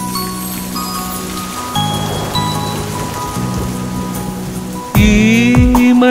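Rain falling on a hard surface, mixed under a soft instrumental intro of sustained notes. About five seconds in, a male voice starts singing, much louder than the rain and music.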